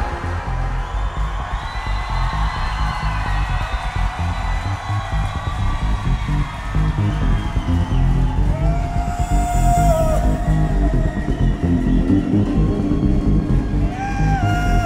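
Live electronic dance music played on synthesizers, including a modular synth: a heavy pulsing bass under higher synth tones that slide up and down in pitch.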